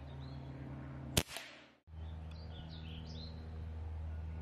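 A single sharp shot from a .22 calibre Reximex Throne Gen2 pre-charged pneumatic air rifle about a second in, followed a fraction of a second later by a fainter tick. Birds chirp faintly in the background.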